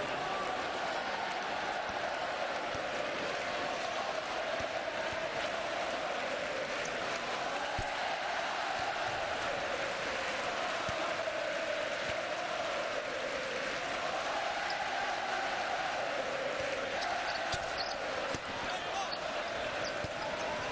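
Basketball arena crowd, many voices chanting together in a sound that rises and falls, with a few knocks of the ball bouncing on the court.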